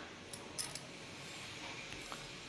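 Faint stirring of a thin gravy in a frying pan: a spatula clicking a few times against the pan over a soft background hiss.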